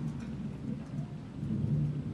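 Low rumbling handling noise from a handheld microphone as it is lowered and held in the lap.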